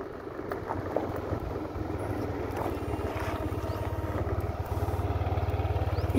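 A motor vehicle's engine idling, a low, evenly pulsing rumble that grows louder toward the end.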